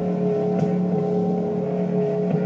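Live band music: electric guitars holding a steady, droning chord that rings on without a break, with little low bass beneath it.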